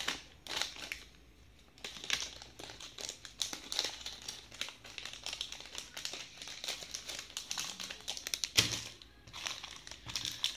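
Clear plastic jewellery packets crinkling and rustling as they are handled, in a run of small crackles and clicks, with one louder knock near the end.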